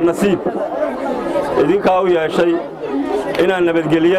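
Speech only: a man speaking continuously into a handheld microphone.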